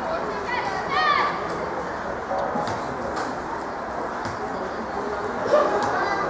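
Outdoor hubbub of overlapping voices from players and spectators at a youth football match, with a single louder call about a second in.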